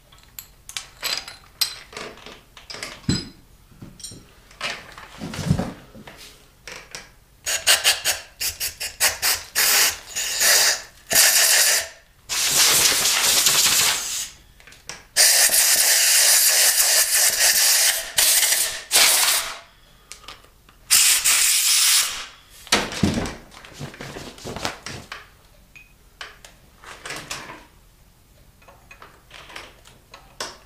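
Compressed-air blow gun blowing the chips out of a freshly tapped deep head-bolt hole in an aluminum engine block: a run of short spurts of air, then three long hissing blasts of about two, three and one second. Light metal clicks and taps from handling tools come before and after the blasts.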